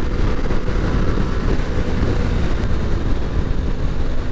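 Steady riding noise from a 2021 Aprilia RS 660 under way: wind rushing over the camera microphone, with the bike's parallel-twin engine running underneath.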